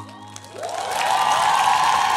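Studio audience applauding and cheering, starting quiet and swelling sharply about half a second in, with a few whoops through it.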